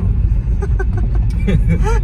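Steady low rumble of a car driving, heard from inside the cabin, with people talking over it from about halfway in.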